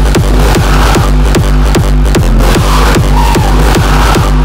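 Hardstyle track in full drive: a heavy kick drum on every beat, about two and a half a second, each kick dropping in pitch, over a sustained deep bass.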